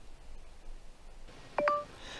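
Faint, hushed background, then a single short electronic beep about one and a half seconds in: a click followed by a brief two-note tone.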